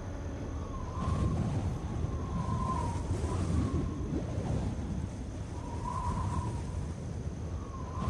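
Eerie horror sound-effect ambience: a low, rough rumble with faint wavering whistle-like tones that rise and fall every second or two.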